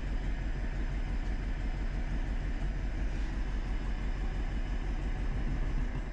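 Lada 2105's carburetted four-cylinder engine running, heard from inside the car, with a steady low rumble that cuts out abruptly at the very end. It is stalling as soon as throttle is applied, which the owner puts down to carburettor trouble.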